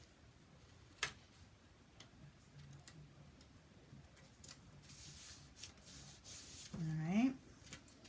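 A cardstock panel being handled and pressed down onto a card base. There is a light tap about a second in, soft paper rustling and rubbing later, and a few faint ticks.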